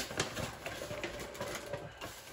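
Brown paper bag rustling and plastic-wrapped packets crinkling as ingredients are taken out of it by hand: a run of short, irregular crackles and taps.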